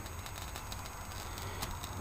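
Vintage Sanyo valve-era television's speaker giving a faint steady hiss over a low mains hum, with slight crackling.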